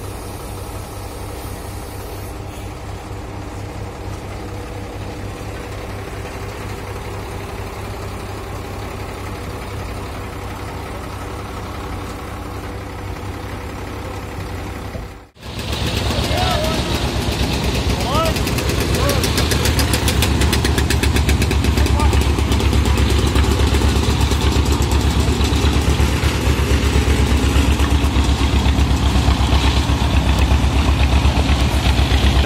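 Engines of an asphalt paver and dump truck running steadily. After a sudden cut about halfway, an old three-wheel static road roller's engine runs much louder and close by as the roller drives past.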